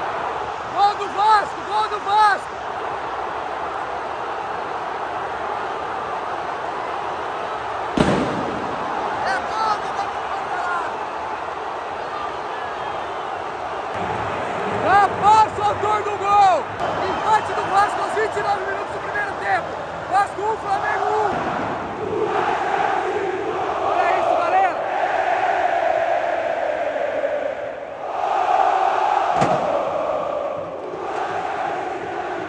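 Large football stadium crowd with a steady roar and clusters of short, pitched shouts near the start and again about halfway. A single sharp bang comes about 8 seconds in. In the last third the crowd turns to sustained massed chanting.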